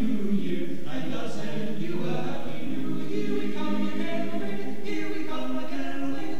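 Mixed chamber choir of men and women singing held chords in several parts. A sibilant consonant sounds about five seconds in.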